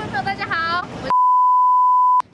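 A woman talking, then about halfway through a loud, steady single-pitch censor bleep that blanks out a word of her self-introduction.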